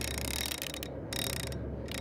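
Big-game lever-drag fishing reel's drag clicking rapidly as a hooked bluefin tuna pulls line off the spool, stopping briefly twice, about a second in and again near the end.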